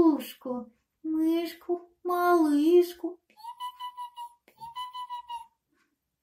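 A narrating voice, then about three seconds in two high-pitched, fluttering squeaks of about a second each, voicing the mouse.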